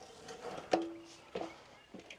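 Climbing a ladder: a few sharp knocks from feet on the rungs. The first, about three-quarters of a second in, leaves a short ringing tone, and a second knock about half a second later rings more briefly.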